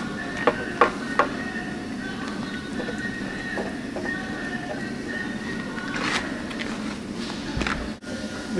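Music playing steadily, with a few light clicks in the first second or so.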